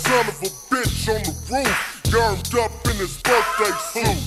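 Chopped-and-screwed hip hop: slowed-down rap vocals over a beat with a heavy bass line.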